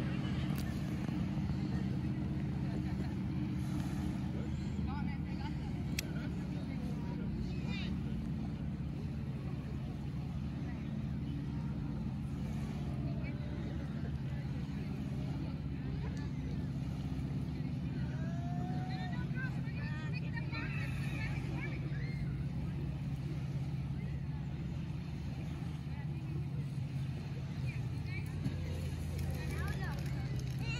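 Steady low engine hum, with faint voices over it that grow a little clearer about two-thirds of the way in.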